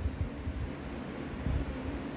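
A low, steady rumble of background noise in a pause between sentences, with no clear event in it.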